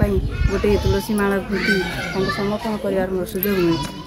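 A woman talking steadily into a handheld microphone, with a low rumble on the microphone during the first second.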